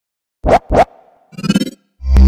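Logo intro sound effects: two quick record-scratch sweeps about half a second in, then a short pitched musical stab a second later.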